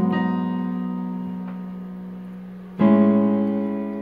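Yamaha Portable Grand keyboard on its piano voice playing two held chords: an A-flat octave bass under F-sharp, B and E-flat rings and fades, then, a little under three seconds in, an A bass under A-flat, C-sharp and E is struck.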